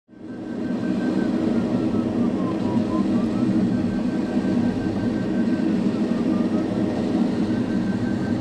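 Steady airflow rush in the cockpit of an ASW 27 glider in flight, fading in at the start. A faint high beeping tone, typical of a glider's audio variometer, runs over it and sags lower in pitch twice before rising back.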